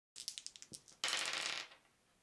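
Plastic polyhedral dice clattering on a wooden table. A quick run of separate clicks comes first, then about a second in a dense half-second rattle that dies away.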